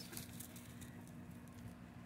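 Quiet background with a faint steady low hum and no clear event.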